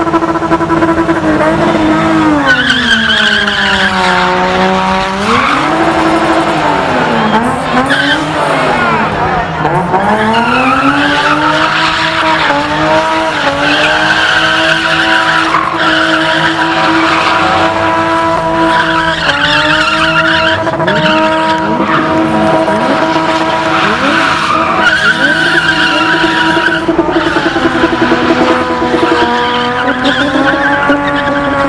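BMW E30 engine held at high revs while it spins its rear tyres, with tyre screech over it. The revs dip and climb back several times.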